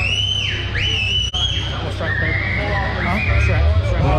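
A person whistling loudly: two quick high notes that rise and fall, then a longer wavering whistle that drops lower and rises again, over a steady low background hum.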